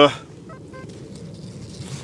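A man's voice trails off, then a low, even outdoor hiss with a few faint, short high tones about half a second in.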